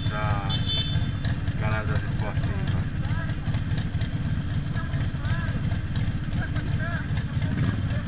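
A Harley-Davidson Iron 1200's air-cooled V-twin engine running steadily, with voices faintly over it.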